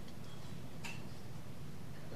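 A pause in speech: steady low room hum, with one faint click a little under a second in.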